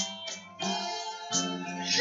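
Acoustic guitar strummed, a few chords struck and left ringing.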